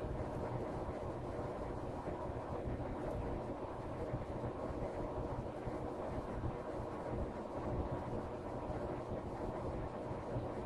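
Steady low hum and hiss of background noise, even throughout, with no distinct knocks or clicks.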